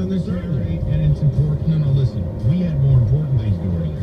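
A man's voice talking over a car radio, with the car's steady low road rumble underneath and a faint steady hum.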